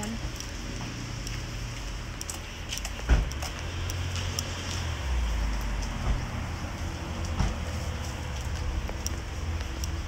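Low rumble of wind buffeting a phone microphone, with handling bumps as the phone is carried, one sharp knock about three seconds in.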